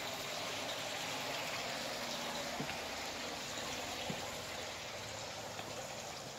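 Steady rushing noise like running water, with a few faint clicks; it eases slightly near the end.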